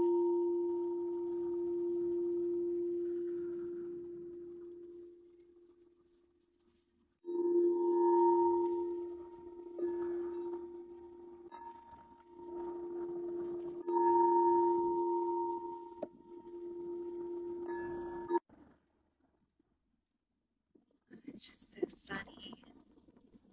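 Pink crystal singing bowl tuned to the heart chakra, ringing with one steady pure tone and a fainter overtone above it. The first note fades away over about six seconds. The bowl is sounded again about seven seconds in, swells twice, and is cut off suddenly about eighteen seconds in as it is damped.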